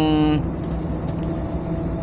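Steady in-cab drone of a Mercedes-Benz Actros 2040 truck cruising on the highway, engine and road noise together.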